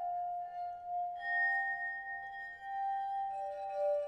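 Crystal singing bowls ringing in long, overlapping held tones, with a new higher tone entering about a second in and a lower one joining near the end.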